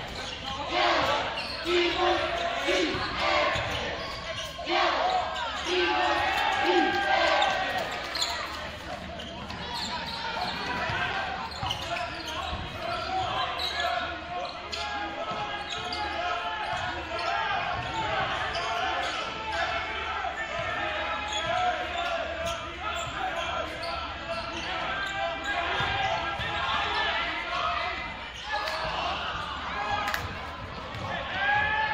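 A basketball being dribbled on a hardwood gym floor, with repeated bounces most frequent early on. Players' and spectators' voices carry over it, echoing in a large gym.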